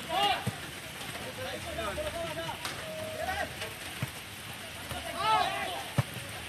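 Footballers shouting and calling to each other across the pitch, loudest about five seconds in, with a few sharp thumps of the ball being kicked.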